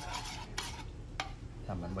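Metal spoon stirring liquid in a ceramic bowl, scraping round it and clinking against the side twice.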